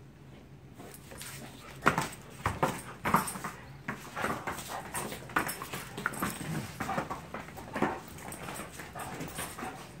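Dogs play-wrestling, with short, irregular play noises and scuffling. Quiet for the first second or so, then a rapid, uneven run of sharp sounds, the loudest about two and three seconds in.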